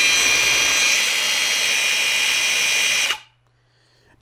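Cordless Milwaukee M18 variable-speed angle grinder driving a pipe-polishing sanding-belt attachment, running free with no workpiece at its lowest setting, about 3,500 RPM: a steady run with several high, steady tones. It stops about three seconds in.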